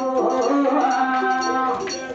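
Villu pattu performance: a male singer holds one long sung note, its pitch lifting slightly about a second in, over the light jingling percussion of the bow-song ensemble.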